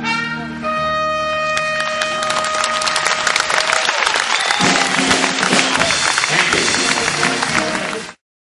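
A big band ends the song with a long held brass note, then audience applause and cheering swell and continue. The sound cuts off abruptly at the end.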